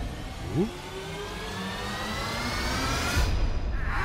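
A rising whine: several tones slowly climb in pitch together while growing louder, with a short low upward swoop about half a second in. The high part drops out shortly before the end.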